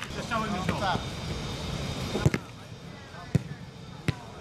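A football being kicked on an artificial-turf pitch: sharp single thuds of the ball being struck, the loudest about two seconds in and two more near the end, over shouts from the players.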